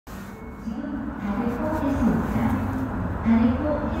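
Recorded station public-address announcement for an approaching metro train, a voice over the platform speakers that ends with the English word "Please" near the end.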